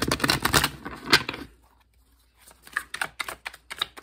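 A deck of oracle cards being riffle-shuffled: a dense, rapid flutter of card edges for about a second and a half, then after a short pause, scattered separate clicks as the cards are shuffled on by hand.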